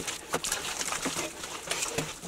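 A short-handled hoe chopping into wet clay and mud. It strikes several times at an uneven pace, each stroke a short dull knock.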